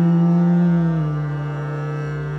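Male Carnatic voice holding one long, steady note in a raga alapana blending Sahana and Kanada, over a steady drone. The note softens about a second in.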